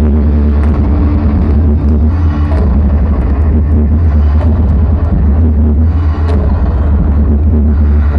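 Gothic metal band playing live and loud: electric guitar over a heavy, steady bass.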